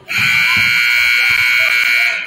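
Gym scoreboard horn giving one loud, steady blast of about two seconds as the game clock reaches zero, signalling the end of the third quarter.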